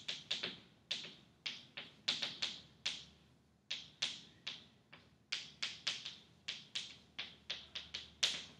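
Chalk writing on a chalkboard: a string of sharp taps and short scratches, about three a second, as each stroke is put down, with a brief pause a little past three seconds in.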